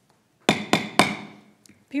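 A gavel rapped three times, sharp knocks about a quarter second apart, each with a short ringing tail, calling the meeting to order.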